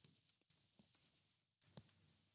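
Marker squeaking on a glass lightboard while writing: a series of short, high squeaks, with three in quick succession near the end.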